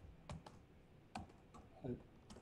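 Faint, irregular keystrokes on a laptop keyboard, several separate key presses.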